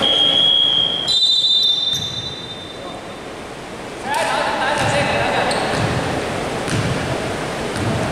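Basketball game in a large echoing gym: brief high-pitched squeals in the first two seconds, then players' voices and a basketball bouncing on the wooden court.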